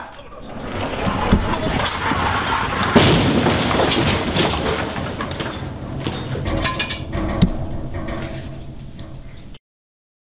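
Breakaway set pieces and furniture crashing down in a practical destruction effect: a long clatter and rumble of falling debris, with sharp impacts about a second and a half, three and seven and a half seconds in, dying away before the sound cuts off suddenly near the end.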